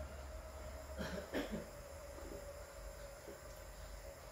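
A man drinking a mouthful of beer from a glass, with two short throat sounds of swallowing about a second in, over a faint steady hum.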